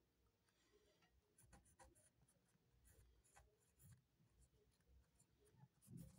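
Faint scratching of a pen writing on paper in a series of short strokes, with small ticks between them.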